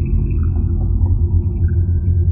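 Dark ambient background music: a loud, steady low rumbling drone with sparse held high tones drifting above it.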